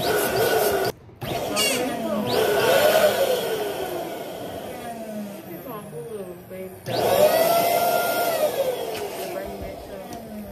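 Electric balloon inflator blowing air in bursts into latex balloons, with a wavering whine and rubbery squeaks. It stops briefly about a second in, runs again, dies down near the middle, and starts up again a little before the end.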